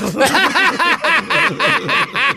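Men laughing hard at a joke: a rapid, even run of 'ha' pulses, about six a second.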